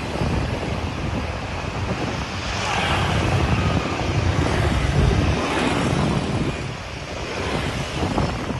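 Street traffic with motorbikes going by, swelling a few times as vehicles pass, over wind buffeting the microphone.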